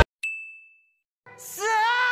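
A single bright ding that rings for about half a second and fades, followed by a second of silence. Then a voice starts singing a held, wavering note, the opening of a song.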